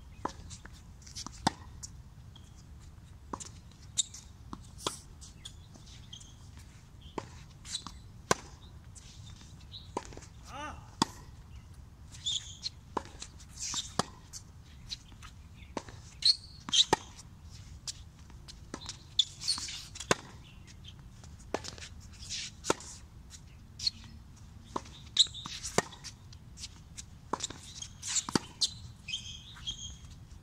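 Tennis rally on a hard court: sharp pops of rackets striking the ball and the ball bouncing, one every second or two.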